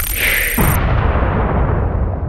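A logo-intro sound effect: a deep boom with a brief whooshing swell, its low rumble slowly dying away.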